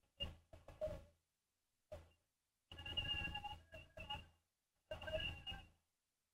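Faint voice heard over a telephone line, in a few short phrases with pauses between them.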